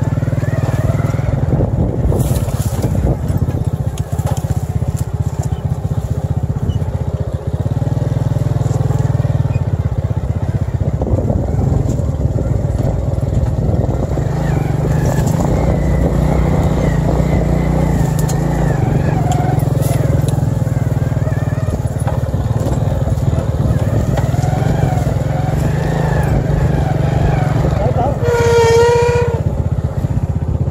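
Small motorcycle engine running steadily at low speed along a rough dirt track. Near the end there is a brief high-pitched sound.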